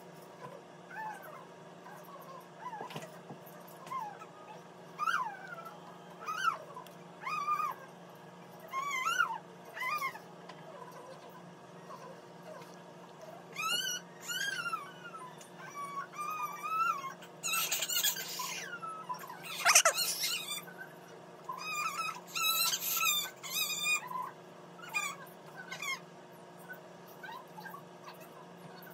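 An animal's high whining calls: many short cries that rise and fall in pitch, repeated all through, with two louder hissy bursts about two-thirds of the way through.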